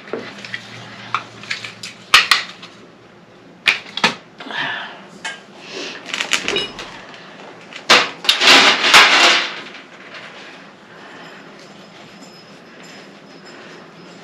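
Small craft supplies clattering and rustling as they are rummaged out of a metal rolling-cart basket: a few sharp clicks, then two longer bouts of rustling about four and eight seconds in, and quieter handling in the last few seconds.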